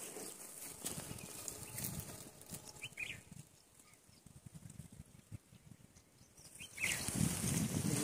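Faint rustling and crackling in dry grass and leaf litter, with a few short, high chirps scattered through it. The rustling grows clearly louder about seven seconds in.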